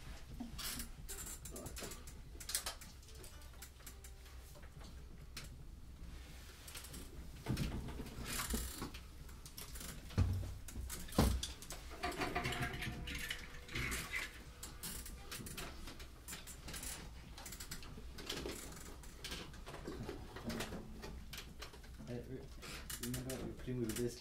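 Quiet, scattered clicks, taps and rustles of instruments being handled as a saxophonist puts down a tenor saxophone and picks up a soprano, with two low thumps about ten and eleven seconds in.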